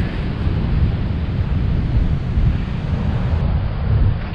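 Wind buffeting the camera microphone, a rumbling noise that rises and falls, over the steady wash of heavy ocean surf.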